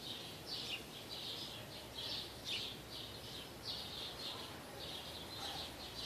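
Small birds chirping: short high calls repeated about once or twice a second over a faint steady background hiss.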